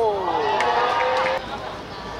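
Several people shouting at once, a drawn-out yell with a few sharp knocks in it, cutting off suddenly after about a second and a half.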